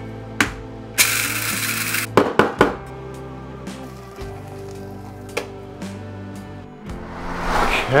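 Electric coffee grinder running in one burst of about a second, with a few clicks and knocks of handling around it, over background music.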